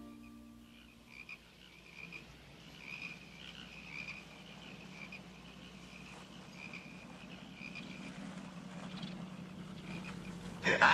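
Faint night ambience: short high chirping calls repeating irregularly over a low steady hum, as the last of the music dies away in the first second.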